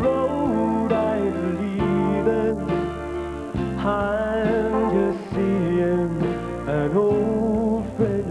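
Country band playing an instrumental passage, with guitar leading over a bass line that changes chords about every second and a half.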